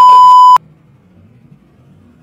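A loud, steady, high edit bleep laid over a voice, the kind used to censor a swear word; it cuts off suddenly about half a second in, leaving faint room noise.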